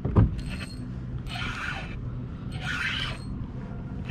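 Spinning reel being cranked against a hooked fish, its gears rasping in two short spells of about half a second each, after a knock right at the start.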